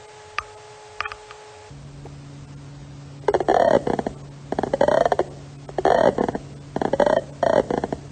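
Tymbal clicks of the tiger moth Bertholdia trigona, played back slowed down, first 30 times and then 100 times, through webinar screen-share audio. A few isolated clicks over a steady hum give way, after a change about two seconds in, to long drawn-out bursts about once a second. Each burst is the tymbal organ buckling in or springing back out.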